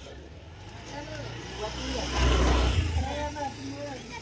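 A motor vehicle driving past, its engine and road noise with a low rumble swelling to a peak about two seconds in and fading away before the end.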